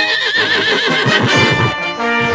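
A horse whinnies, one quavering neigh through the first second, followed by a quick run of hoofbeats, with brass fanfare music behind.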